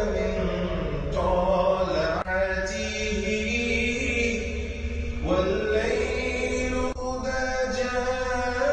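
Background music: a vocal chant sung in long held notes that shift pitch every second or two.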